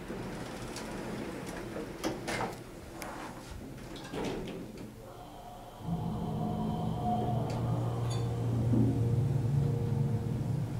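Stainless-steel sliding doors of an Otis hydraulic elevator closing with a few knocks and rattles. Just before six seconds in a steady low hum starts and grows louder as the hydraulic drive starts the car moving.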